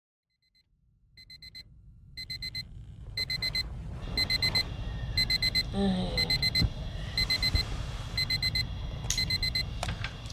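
Electronic alarm beeping in quick bursts of four or five high beeps, one burst about every second, growing louder over the first few seconds.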